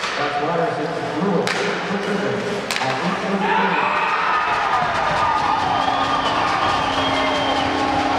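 Ice hockey game: two sharp cracks in the first few seconds, then a rink crowd cheering and shouting after a goal.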